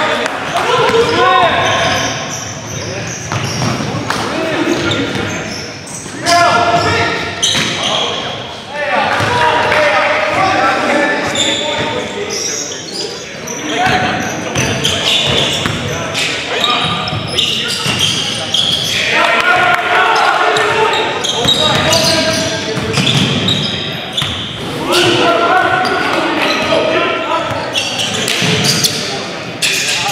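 Live game sound of basketball in a large gym: a ball bouncing on the hardwood court, with indistinct shouting and talk from players and bench.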